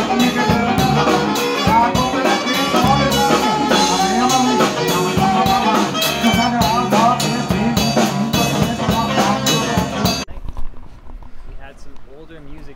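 Live jazz-rock fusion band playing: a saxophone melody over drum kit with cymbal hits and bass, recorded in a small bar. The music cuts off suddenly about ten seconds in, giving way to faint voices.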